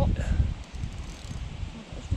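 Wind buffeting the microphone, heard as an uneven low rumble, with a short bit of a voice right at the start.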